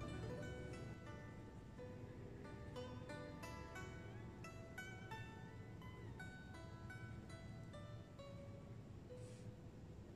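Quiet background music of plucked string notes played in a slow, even melody.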